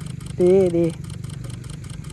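A voice saying 'di di' ('good, good') over a steady low hum and faint, rapid clicking about five times a second that stops near the end.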